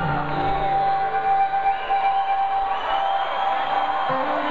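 Live blues-rock through a concert PA: a harmonica holds one long steady note while the low guitar notes beneath it die away about a second and a half in.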